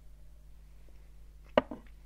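A whisky tasting glass set down on the table about one and a half seconds in: one short, sharp knock, followed by a softer second tap.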